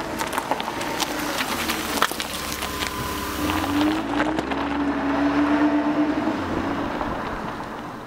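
A produced logo sound effect. Rapid clicks and ticks fill the first half, then a low drone with a held tone that bends in pitch swells, loudest about two-thirds of the way through, before easing off.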